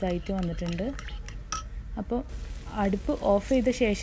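A woman talking, with light clinks of a metal spoon against a bowl as curd is stirred.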